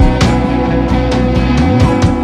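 Church praise-and-worship band playing an instrumental passage with a steady beat, without singing.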